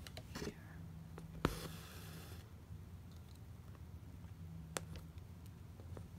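Embroidery floss pulled through fabric stretched in a hoop: a soft rasp about one and a half seconds in, with a couple of light clicks, over a faint steady hum.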